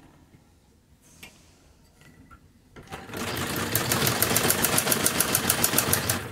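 Domestic sewing machine stitching a seam along a folded edge of fabric. It starts about halfway through after a few soft handling clicks, with a fast, even run of needle strokes at about nine a second.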